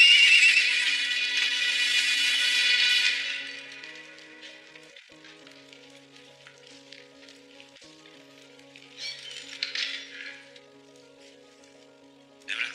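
Film score with sustained low notes. Over it, a loud horse whinny at the start, fading out after about three and a half seconds, and a short noisy burst at about nine to ten seconds.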